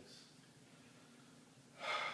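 Quiet room tone, then near the end a man's short, sharp breath or gasp that starts suddenly.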